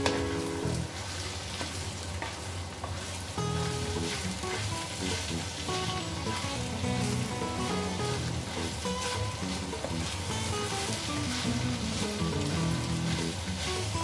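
Minced beef and vegetable filling sizzling in a frying pan as it is stirred with a wooden spoon, over background music.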